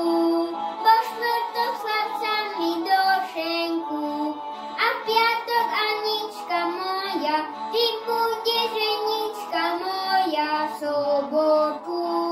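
A young boy singing a Slovak folk song solo in a clear, high voice, the melody moving from note to note with short breaks between phrases.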